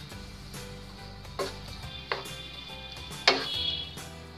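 Background music playing steadily, with three short knocks of a wooden spatula against a nonstick frying pan as vegetables are stirred. The last knock, near the end, is the loudest.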